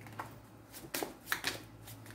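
Tarot cards being handled and laid down on a felt-covered table: a handful of quiet card flicks and taps, mostly in the second half.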